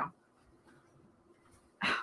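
A short voice-like sound right at the start and another near the end, with quiet in between.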